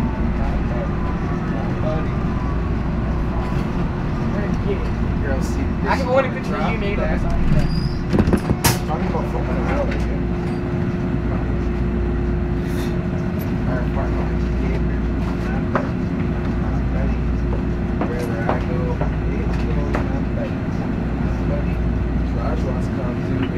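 Inside the front car of a Toronto subway train (TTC H6 car), running out of a station and into the tunnel: a steady rumble of wheels and motors with a steady hum, and a few louder knocks and clatters around seven to nine seconds in.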